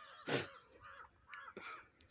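Birds calling faintly and repeatedly in the background, with one brief, loud rustle about a third of a second in.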